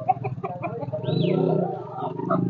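Aseel chicken held in hand clucking, with a short high falling call about a second in.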